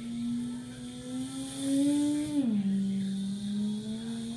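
A girl humming one long unbroken note with her mouth closed. The pitch creeps up, drops sharply about two and a half seconds in, then slowly rises again.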